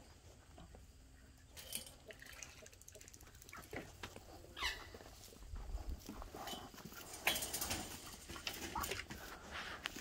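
Faint yard sounds: scattered light rustles and clicks, with a few short bird calls, including a falling chirp about halfway through.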